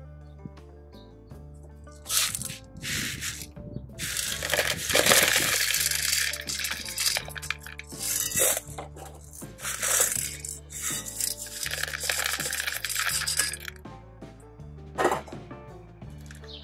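LECA clay pebbles poured from a stainless steel bowl into a plastic pot around an orchid's roots, rattling and clattering in several spurts, loudest about four to six seconds in, over background music with a steady bass line.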